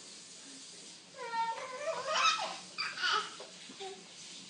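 A baby babbling and laughing in a few short, high-pitched vocal bouts, starting about a second in and stopping shortly before the end.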